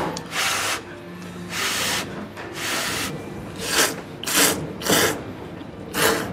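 A person slurping thick ramen noodles in about six separate slurps. The last three are shorter and come in quicker succession.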